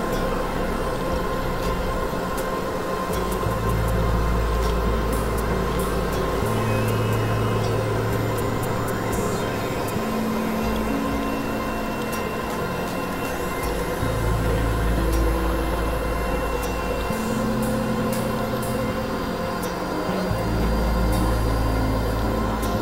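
Experimental droning synthesizer music from a Novation Supernova II and Korg microKORG XL: steady held tones over a noisy haze, with a deep bass tone that comes in and drops out every few seconds and scattered faint clicks.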